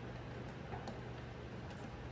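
Low steady hum of the garage, with a couple of faint clicks as a plastic bulb socket is pressed and twisted to lock into the back of an LED tail light housing.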